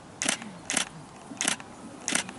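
Three short, sharp clicks, irregularly spaced about half a second apart.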